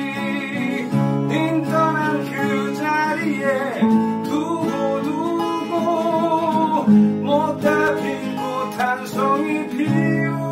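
Acoustic guitar playing a song accompaniment of picked and strummed chords, with a voice singing a melody with vibrato over it.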